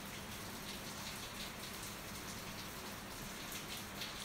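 Faint steady hiss of background noise with a low hum, unchanging throughout, with no distinct strokes or knocks.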